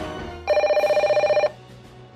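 Background music stops about half a second in, and a landline telephone rings once: a loud, fast-warbling electronic ring about a second long.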